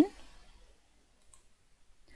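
Near silence with a single faint click about a second in: a computer mouse click bringing up the next slide animation.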